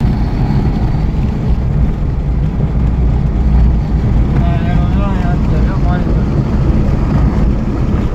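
Car driving at speed, heard from inside the cabin: a steady low engine and road rumble.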